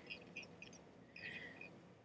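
Near silence, with a few faint light rustles and ticks from hands working thread and pheasant tail fibers at a fly-tying vise.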